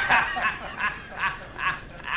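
Men laughing hard at a joke, a run of short laughs about two or three a second, loudest at the start.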